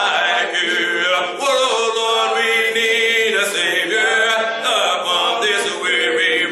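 A cappella hymn singing led by a man's voice, with long held notes that glide from one pitch to the next and no instruments.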